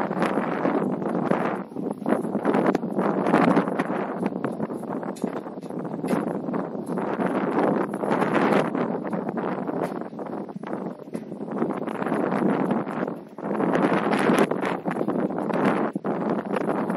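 Wind buffeting an outdoor camera microphone: a loud rushing noise that swells and drops in gusts every second or two.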